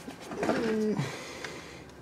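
A man's brief hummed 'hmm' while searching, a single held voiced tone of about half a second that drops in pitch, followed by quiet.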